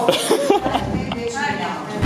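Speech: a person speaking Bulgarian, with a brief low rumble about half a second in.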